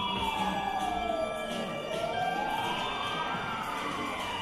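A slow wailing siren: its pitch falls, climbs again from about two seconds in, and begins to fall once more near the end, over faint background music.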